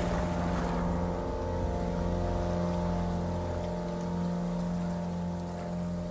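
Soundtrack music holding a sustained low chord under a rushing, spraying noise that starts with a sudden burst and slowly dies away.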